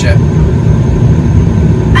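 Car engine idling, heard from inside the car as a steady low rumble.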